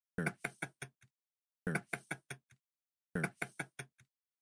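A short run of knocks, about five quick strokes that fade away, repeated identically about every second and a half, three times over.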